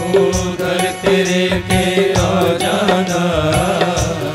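A devotional bhajan sung by a male singer into a microphone, with instrumental accompaniment and an even percussion beat. In the second half the voice holds a long, wavering note.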